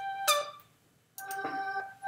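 Notes of a short melodic phrase played by a software instrument (Reason's ID8 sound module). A held note, a new note about a quarter second in, a half-second pause, then another held note starting just after a second in.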